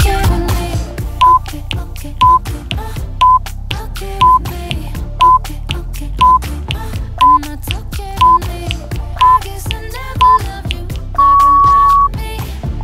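Workout interval timer beeping a countdown over background pop music: about ten short beeps, one a second, then a single longer, slightly higher beep marking the end of the interval.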